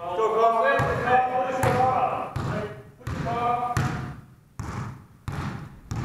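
Players shouting across a gym, then a basketball being dribbled on the hardwood floor, about three bounces in the last second and a half.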